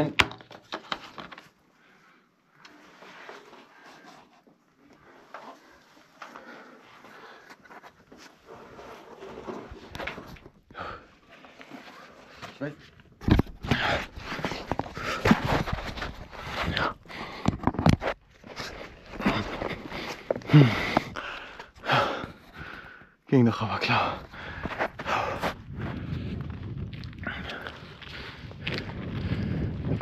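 Faint rustling and clicking of gear being packed away. From about halfway comes louder scuffing and hard breathing as a person climbs a knotted rope up a concrete shaft.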